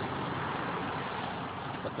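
Steady outdoor background noise with no distinct event.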